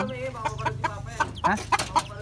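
Chickens clucking, a run of short calls one after another.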